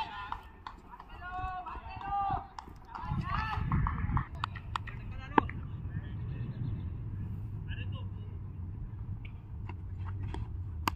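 Players' voices calling out on a cricket field, then a single sharp knock about five seconds in, over a steady low rumble.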